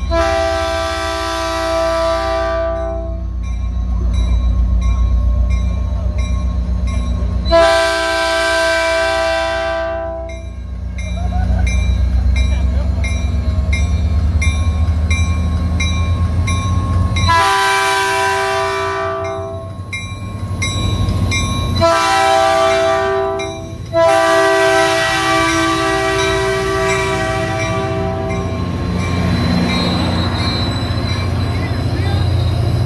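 Caltrain diesel locomotive's multi-tone air horn sounding five blasts, the last four long, long, short, long, the standard grade-crossing warning. A low engine rumble runs under the horn as the train approaches and passes close by.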